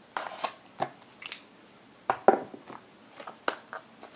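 Sealed cardboard trading-card boxes being handled and shifted on a shelf: a run of light knocks and short rustles, the loudest about two seconds in.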